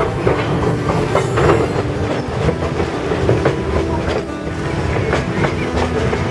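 Passenger train running on jointed track, heard from on board: a steady rumble of the moving cars with irregular clicks of the wheels over the rails.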